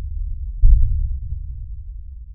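Deep bass rumble of a logo sound effect, with a low boom about two-thirds of a second in that then slowly fades away.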